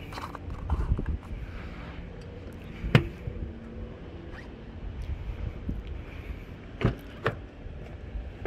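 Handling noise and clicks at a car's fuel filler. About three seconds in, the fuel filler door snaps shut with one sharp click, the loudest sound. Near the end, two quicker clicks come from the rear door latch as the door is opened.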